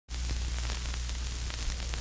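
Analog TV/video static: a dense, steady hiss with a low electrical hum beneath it and scattered crackles.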